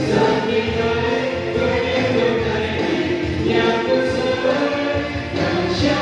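A vocal group singing a Vietnamese song together, with musical accompaniment.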